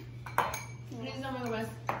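Two sharp clinks against a ceramic bowl, about a second and a half apart, from utensils and a syrup bottle knocking the dish.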